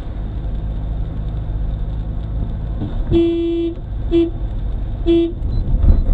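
Car horn sounding three times, one longer blast followed by two short ones, over the steady low rumble of the car's engine and tyres heard from inside the cabin.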